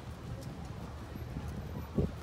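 Footsteps on stone paving among a walking crowd, with scattered voices of passers-by and a sharp thump at the very end.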